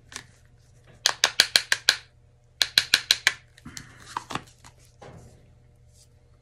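Two rapid runs of sharp taps, about seven a second, of hard paint-pouring gear (cups, bottles or a stir stick) knocked together, followed by a few scattered knocks.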